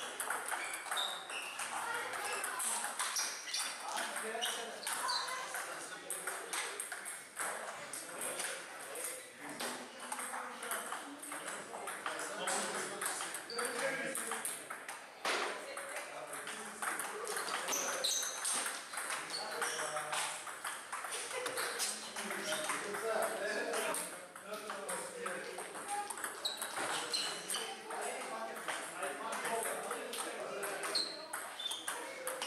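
Table tennis ball being struck by paddles and bouncing on the table in repeated rallies: sharp, quick clicks, with background voices throughout.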